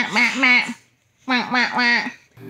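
Playful voice sounds at a toddler: short, evenly pitched syllables in two runs of three, with a brief pause between the runs.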